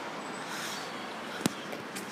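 Steady background hiss with a single sharp click or knock about one and a half seconds in.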